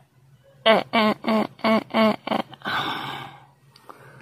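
A person's voice making six short repeated syllables in quick succession, each falling in pitch, followed by a long breathy sigh.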